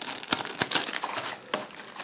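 Thin clear plastic packaging bags crinkling as they are handled, with a few sharper crackles among the rustle.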